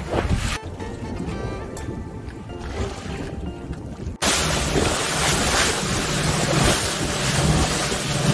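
Background music over the sound of choppy sea from a small boat. From about four seconds in, wind blows hard on the microphone and covers much of it.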